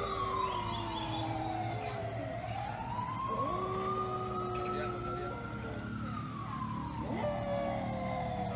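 A siren wails slowly up and down without a break, and a dog howls along with it in long held notes, three times. The howling is the dog's response to the siren.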